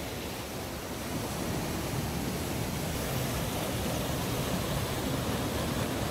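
Shallow river rapids rushing steadily over rocks and a low stone weir.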